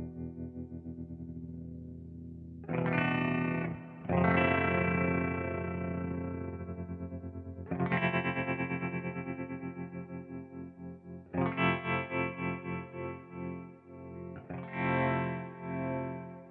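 Electric guitar chords played through an optical tremolo pedal: five chords are struck, and each one's volume pulses up and down several times a second as it rings out.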